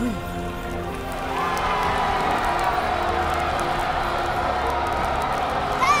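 A crowd cheering over a steady bed of music.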